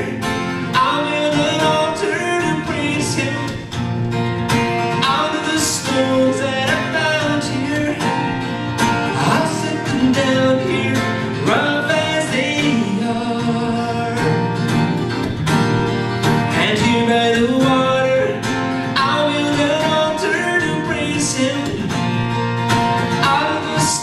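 A man singing with a strummed acoustic guitar, performed live.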